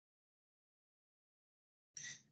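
Complete silence: the audio drops out entirely between phrases.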